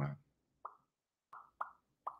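Three short, soft mouth clicks, tongue or lip pops, spaced across a thinking pause right after a word ends.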